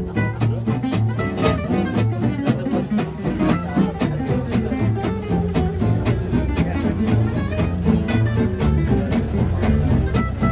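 Gypsy jazz ensemble of acoustic guitars and upright double bass playing a swing tune, the guitars chopping a steady rhythm over bass notes.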